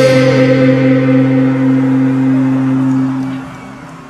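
A live band holds one sustained chord that rings steadily, with a few falling slides over it in the first second, then fades away about three and a half seconds in.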